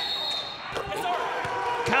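A referee's whistle blows for about half a second at the start, calling a foul on a made basket, followed by players shouting and a few thuds of the basketball on the hardwood court.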